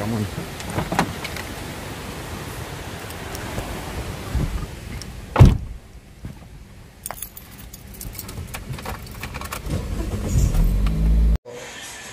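Steady rain hiss with small clicks around a car, then a car door shuts with a sharp thump about five seconds in, the loudest sound. Heard from inside the cabin, the car then pulls away, its engine and tyres on the wet road rumbling louder until a sudden cut near the end.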